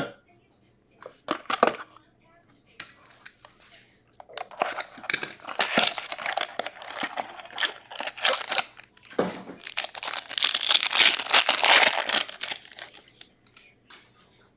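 Plastic shrink wrap crinkling and tearing as it is peeled off a small box of trading cards, in a long run of crackles from about four seconds in, loudest near the end. A few light taps come before it.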